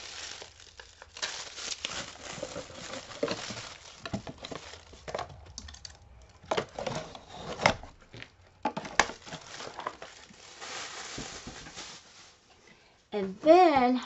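Plastic packaging crinkling and rustling in bouts, with a few sharp clicks and knocks as a small plastic desk fan, its box and cable are handled and moved away.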